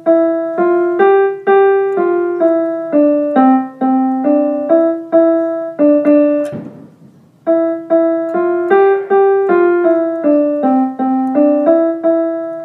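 Piano playing a simple melody one note at a time, a short phrase of about a dozen notes. After a pause of about a second it plays the same phrase again.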